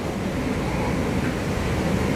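Steady room noise in a pause between sentences: an even, continuous rumble and hiss, heaviest in the low end, with no distinct events.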